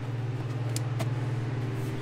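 A steady low mechanical hum, like a motor vehicle engine running nearby, with two sharp clicks a little under a second in, about a quarter second apart.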